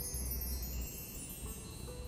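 Background music with a shimmering chime sweep: many high tinkling tones gliding slowly downward and fading, with a few soft notes lower down. A steady low rumble runs underneath.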